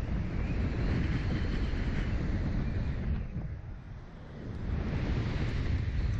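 Wind rushing over the microphone of a camera mounted on a Slingshot reverse-bungee ride capsule as it is launched and tumbles through the air. It is steady and loud, eases off briefly about four seconds in, then builds again.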